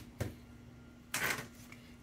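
Quiet handling of a plastic laptop screen bezel on a workbench: a light click near the start, then a brief scrape a little over a second in as the bezel is picked up, over a faint steady hum.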